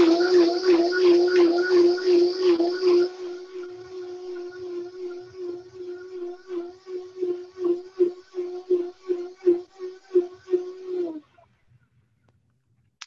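High-speed countertop blender running steadily, liquefying a pomegranate and date salad dressing, with a pulsing flutter over its motor hum. The higher rushing noise drops away about three seconds in, and the motor stops suddenly near the end.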